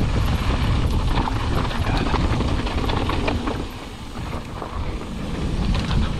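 Mountain bike riding down a dirt singletrack: wind on the microphone over the rumble of knobby tyres on dirt and loose rock, with many small clicks and knocks as the bike rattles over bumps. The rush dips briefly about four seconds in.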